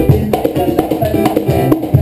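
Live Arabic music: a keyboard playing a quick melody of short stepped notes over a steady beat of hand-drum strokes.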